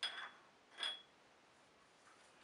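Two light clinks of glass a little under a second apart, each with a short ringing note: a paintbrush knocking against glass at the painting table.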